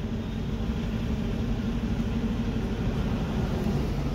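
Steady low rumble of an idling motor vehicle engine.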